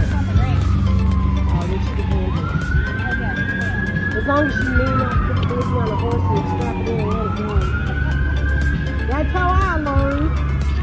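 A siren wailing in slow cycles: each time it climbs quickly to a high pitch, then sinks slowly over a few seconds before climbing again. A steady low hum runs underneath.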